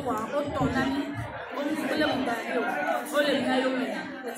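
A woman speaking into a handheld microphone, with other voices chattering in the background.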